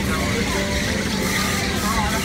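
Fairground kiddie car carousel running: a steady mechanical hum over a low rumble, with voices talking in the background.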